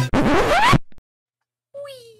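Edited-in sound effect: a short, noisy sound sweeping steeply upward in pitch for under a second, cut off abruptly. After a silence, near the end, a man's voice holds a long, slowly falling note.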